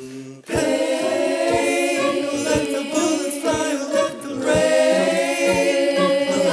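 An a cappella choir of mixed voices singing in layered harmony, with a low beat keeping time about twice a second. The voices come in together about half a second in, after a brief hush.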